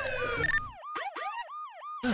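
Police siren sound effect in a fast yelp, the pitch sweeping up and down about four times a second.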